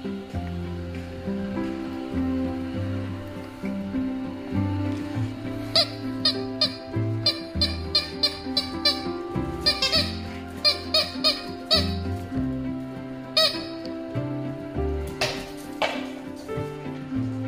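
Rubber toy ball squeaking as it is squeezed, a quick run of short, sharp squeaks about two a second from about six seconds in, with two more near the end, over background music.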